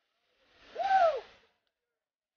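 One loud whoop from a person cheering, about a second long, its pitch rising and then falling, near the middle.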